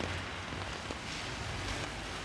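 Steady rain falling on wet paving and brickwork.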